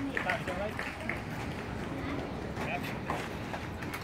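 Indistinct background chatter of voices, with a few scattered clicks and knocks.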